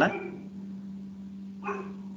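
A pause in a man's talk over an online-call line: a steady low hum runs under faint background noise. About a second and a half in there is one short voiced sound.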